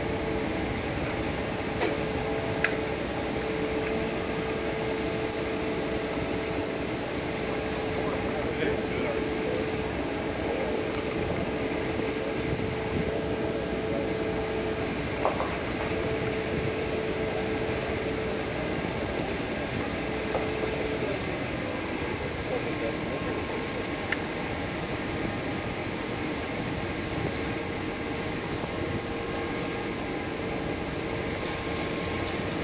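Engine of a Goldhofer heavy-haul trailer rig running steadily as it slowly carries a steam locomotive, a steady hum with a few light clicks and knocks. The hum's tone drops out about two-thirds of the way through and comes back near the end.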